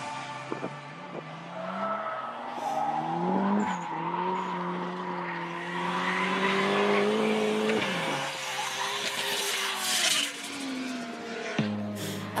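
Turbocharged 1JZ straight-six of a drifting Toyota JZX sedan revving hard, its pitch climbing and then dropping sharply about four and eight seconds in, over sustained tyre squeal.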